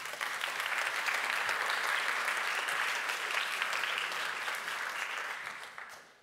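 Audience applauding, swelling in the first second and dying away near the end.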